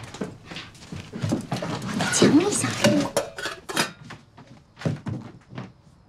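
A voice with knocks and clatter of objects being handled and taken out of a suitcase, including a metal cooking pot.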